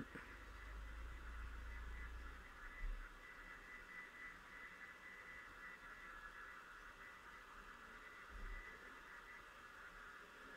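Near silence: faint steady room hiss, with a low hum for the first couple of seconds and a couple of tiny soft handling noises.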